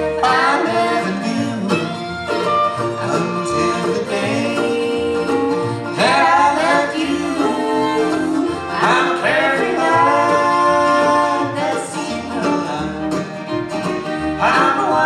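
Acoustic bluegrass band playing an instrumental break: fiddle over acoustic guitars, mandolins and upright bass, with long sliding notes.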